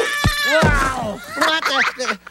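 A cartoonish puppet voice in a long cry that slides down in pitch, with a low thump about a quarter second in, followed by shorter vocal sounds near the end.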